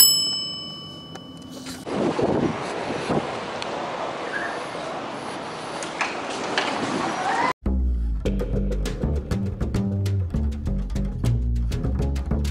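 A single bell-like ding that rings out for about two seconds, then the general noise of a store entrance while walking through its automatic doors. About seven and a half seconds in, this cuts off sharply to background music with a plucked double bass.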